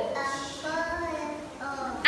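A young boy speaking softly in a few drawn-out syllables.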